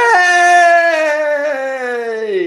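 A man's voice holding one long, loud cry in celebration, its pitch sagging slowly as it goes.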